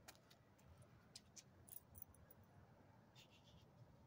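Near silence, with a few faint, scattered ticks and clicks.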